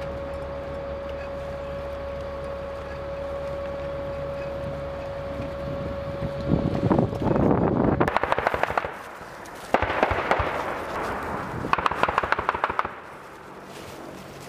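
Stryker armored vehicle's engine running with a steady whine, then, from about six and a half seconds in, three long bursts of automatic gunfire, rapid cracks in quick succession.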